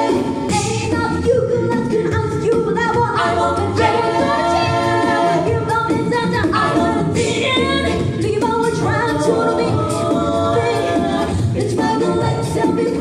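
A six-voice a cappella group of mixed male and female singers performing live through microphones, with a sung bass line under shifting harmony and a lead voice.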